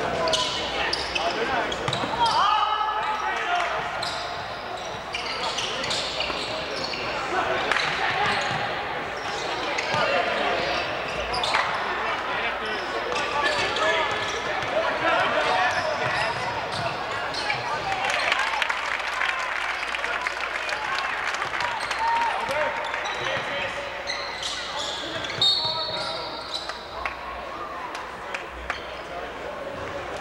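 Basketball game in a gym: a ball dribbling on the hardwood floor, with voices from players and spectators echoing around the hall.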